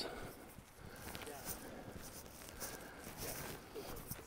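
Hikers' footsteps on a rocky trail strewn with dry leaves: faint, uneven steps on stone and leaf litter.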